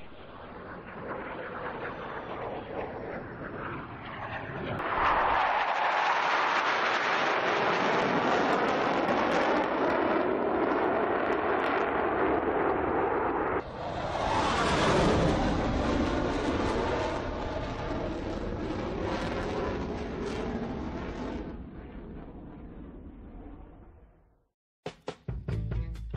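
Jet aircraft engine noise that swells in about five seconds in and is cut off abruptly near the middle. It then swells again and slowly fades away toward the end.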